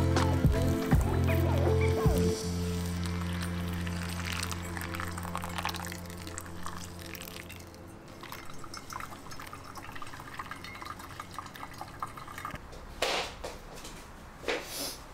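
Water poured in a thin stream onto ground coffee in a paper filter cone, trickling and dripping through the grounds as pour-over coffee brews, under background music that fades out over the first half. A short clatter near the end.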